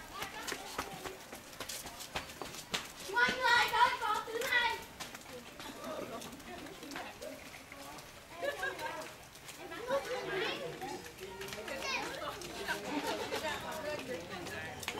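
Voices of children and adults talking and calling out, with no clear words. A child's high voice is the loudest, a few seconds in.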